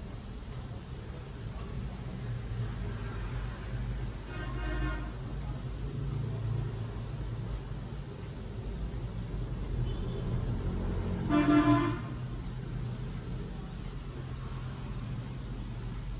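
Two short vehicle-horn toots over a steady low traffic rumble: a faint one about five seconds in and a louder one a little past the middle.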